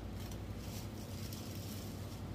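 Quiet room tone with a steady low hum and no distinct sound events.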